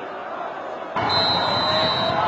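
Referee's whistle: one steady blast about a second long, starting about halfway through. It signals that the penalty kick may be taken.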